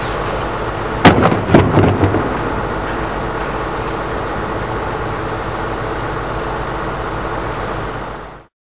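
1/3-scale ENUN 32P spent fuel cask model hitting the impact pad in a 9 m slapdown drop: one loud impact about a second in, then several lighter knocks over the next second as the cask slaps down and bounces. A steady background hum runs throughout.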